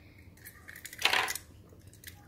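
Handling noise from a small die-cast toy car turned over in a child's fingers: faint light clicks, with a brief rustle about a second in.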